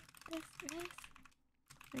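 Computer keyboard typing: a run of quick, light key clicks, with a few short soft vocal sounds from a woman partway through.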